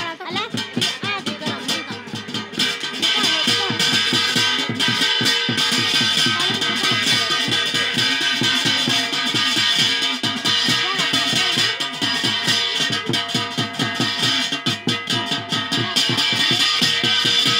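Loud Garhwali jagar folk music with a fast, driving drum beat.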